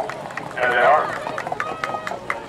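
Hoofbeats of harness-racing pacers on a dirt track, a run of sharp, irregular clicks as the horses go by, with indistinct voices briefly about half a second in.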